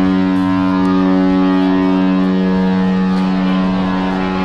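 Cruise ship's horn sounding one long, steady, deep blast, louder than the talk around it. It is typical of a ship's signal before leaving port.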